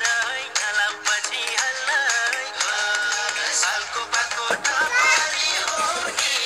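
A song playing: a sung melody over instrumental backing with a steady beat.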